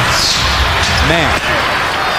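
Steady crowd noise in a basketball arena during live play, with a short shout from a voice about a second in.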